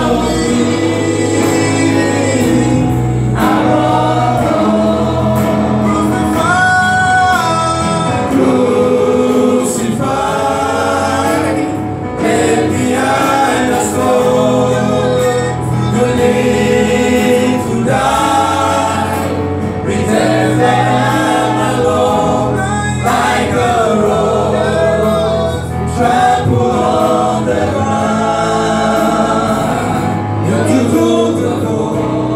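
A live gospel praise team, a group of men and a woman, sings together into microphones over a keyboard accompaniment with sustained low notes.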